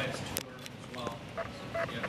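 Faint, indistinct voices murmuring in a meeting room, in short broken fragments, with a sharp click about half a second in.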